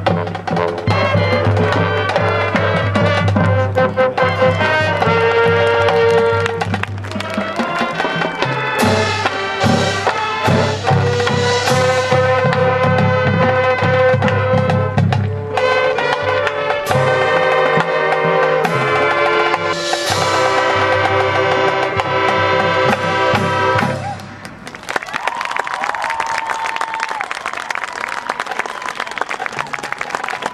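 A marching band playing loudly: brass and saxophones over drums and front-ensemble percussion, with a steady low bass line. The music ends about 24 seconds in, and audience applause and cheering follow.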